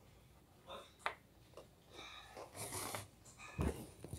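Close-up breathing and handling noises from someone holding the camera: a sharp click about a second in, a breathy rush in the second half, and a low bump near the end.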